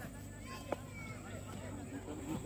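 Faint, distant voices of people talking and calling, with a single sharp click a little after the middle.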